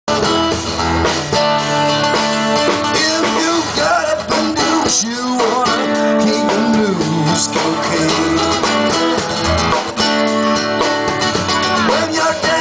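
Live acoustic music: several acoustic guitars strummed and picked together, with a man singing into a microphone.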